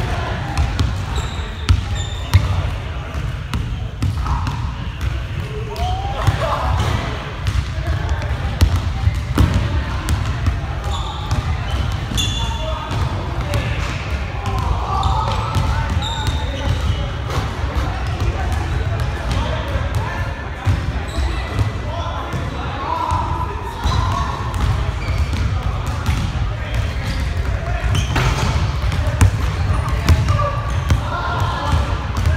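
Pickup basketball game in a gymnasium: a basketball bouncing on the hardwood floor in repeated sharp knocks, with players shouting and talking, all echoing in the large hall.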